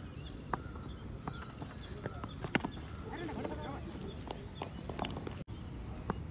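Ambience of an amateur cricket match in play: faint, distant voices of players, with scattered light taps and knocks. The sharpest knock comes about halfway through.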